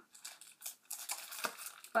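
Packaging rustling and crinkling in irregular bursts as a boxed Magnetic Poetry kit is picked up and handled.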